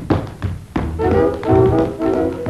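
Swing big band: a steady beat of sharp taps, a little under two a second, then about three-quarters of a second in the brass section comes in with held chords over the beat.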